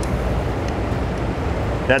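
Steady low background rumble of room noise with no distinct events.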